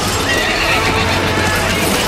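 A horse neighing, one wavering high call lasting about a second, with hoofbeats, laid as a sound effect over the song's backing music.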